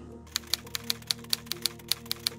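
Soft background music with held chords under a quick run of light, sharp ticks, about five a second.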